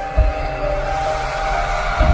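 Logo-intro music: several held synth notes under a rising whoosh, with a deep bass hit just after the start and another at the end.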